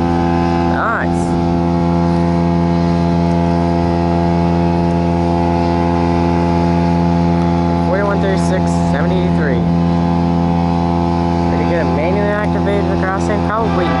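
A large engine drones at one constant pitch with a deep hum beneath it, never speeding up or slowing down.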